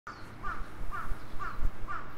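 A bird calling in an even series of short calls, about two a second.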